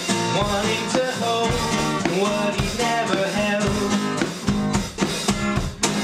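A small rock band playing a song: a Fender electric guitar over a drum kit keeping a steady beat.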